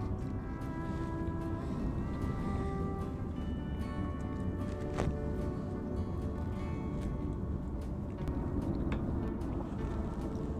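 Background music: a melody of held notes over a steady low layer, with one sharp click about halfway through.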